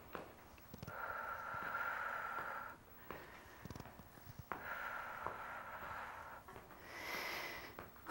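A woman's breathing while she exercises: three faint, drawn-out breaths, the first two about two seconds long and the last about one second, with a few soft taps between them.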